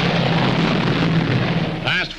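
B-29 bombers' four-engine radial piston powerplants and propellers at full takeoff power, a dense, steady noise with a low engine drone running through it, on an old newsreel soundtrack.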